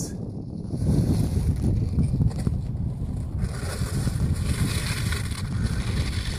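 Wind buffeting the microphone: a steady low rumble that turns brighter and hissier about halfway through.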